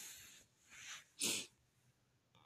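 A person's breath noises: a long breath out, a shorter weaker one, then a short sharp burst of air through the nose about a second and a quarter in.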